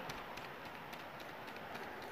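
Quiet steady background hiss with a few faint light ticks as a part is spun down onto a VR-series shotgun by hand.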